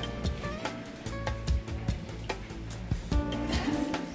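Background music with a steady beat and held tones.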